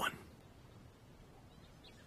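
A man's spoken word ends in the first moment, then near silence with faint room tone.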